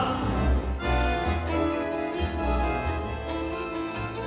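Tango quartet of violin, accordion, piano and double bass playing an instrumental passage without vocals: sustained accordion-and-violin chords over separate plucked double-bass notes.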